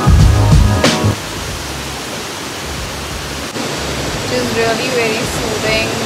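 Background music ends about a second in, leaving the steady rush of a waterfall cascading into a river pool. A voice starts up near the end.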